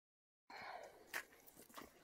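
Near silence: faint rustling and handling of paracord around a tree trunk, with a soft click about a second in, after a brief cut to dead silence at the start.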